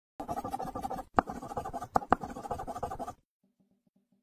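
Pen scratching across paper in quick strokes, with a few sharp taps of the pen, stopping about three seconds in.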